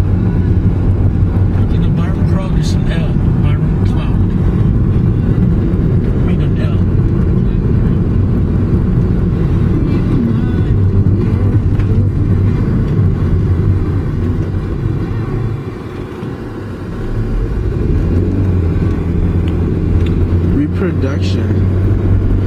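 Car driving, heard from inside the cabin: a steady low drone of engine and road noise, easing briefly about two-thirds of the way through before returning.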